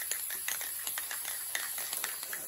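Rust-Oleum clear lacquer aerosol can spraying: a steady hiss as light coats go on, with a few faint clicks through it.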